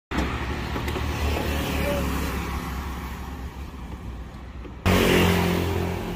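Roadside motor-vehicle engine and traffic noise, a steady low rumble. About five seconds in it jumps suddenly louder, with a steady low engine hum.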